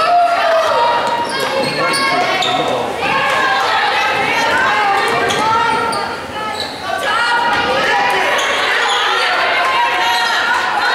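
Basketball game in a gym: a basketball bouncing on the hardwood court amid voices from players and spectators that echo in the hall.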